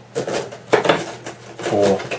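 Hard plastic holster attachments being picked up and handled, a few sharp clattering knocks in the first second, followed by a short spoken word near the end.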